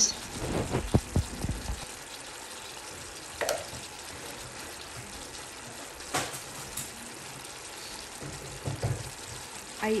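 Chicken adobo and quail eggs simmering in soy-based sauce in a nonstick pan over medium heat, a steady low sizzle and bubble as the sauce reduces and thickens. There are a few soft knocks in the first two seconds and a few light clicks later.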